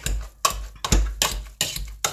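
Hand potato masher working boiled sweet potato in a stainless steel pot: about five repeated mashing strokes, each a soft thump with a knock of metal against the pot.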